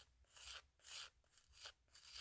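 Faint strokes of a 180-grit hand nail file buffing a natural fingernail, about two light rubs a second, prepping the nail surface before a gel extension.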